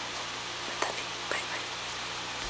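Steady hiss of room noise with a low hum, and two faint, breathy vocal sounds from a woman, a little under a second in and again shortly after.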